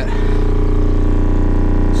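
Rockford Fosgate subwoofer in a ported enclosure playing a steady 30 Hz test tone from a tone generator. At this pitch the cone barely moves and most of the output comes from the port, the sign that the box is tuned close to 30 Hz.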